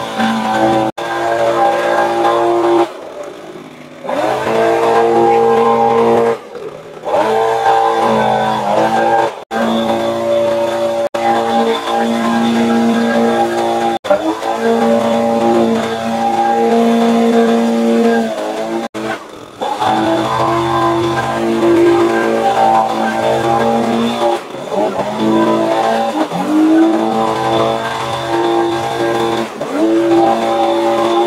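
Handheld gasoline leaf blower running hard. Its engine note drops and climbs back a couple of times as the throttle is eased off and opened again, and the sound breaks off abruptly for an instant now and then.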